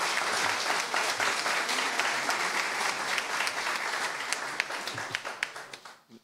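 Applause: many people clapping in a steady stream of claps that dies away near the end.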